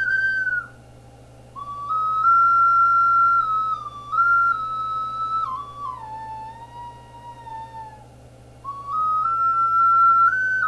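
Focalink Soprano C plastic ocarina playing a slow melody of held notes that steps down to a long low note, with a breath break about a second in and another near the end before the tune picks up again.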